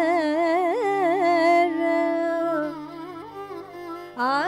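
Carnatic female voice singing an ornamented melodic phrase with a wavering, gliding pitch, with violin accompaniment over a steady tanpura drone. A little past halfway the melody fades, leaving the quieter drone until near the end.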